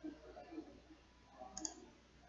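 Faint computer mouse clicks: one right at the start and another about one and a half seconds in, over quiet room tone.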